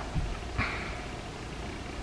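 Faint, brief spoon-and-mouth sounds of someone tasting ice cream from a pint with a metal spoon, including a soft short scrape about half a second in, over quiet room tone.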